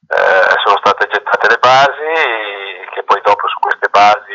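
A man speaking, heard through a video-call connection.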